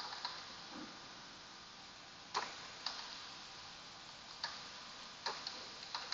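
Faint, scattered clicks of a computer keyboard and mouse: about eight separate keystrokes spaced irregularly, a second or so apart, over a low steady hiss.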